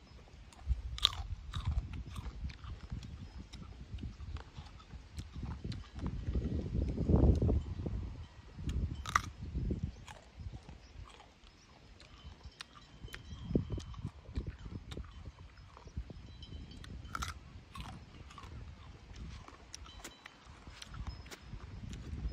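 A person biting into and chewing a firm, round green fruit, with a few sharp crunches spread out among quieter chewing, over a low rumble.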